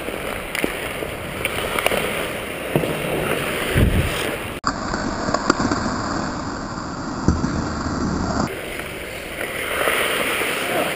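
Ice hockey skates scraping and carving on the ice in a continuous noisy rush, with a few sharp clicks of sticks and puck and a heavier thump about four seconds in.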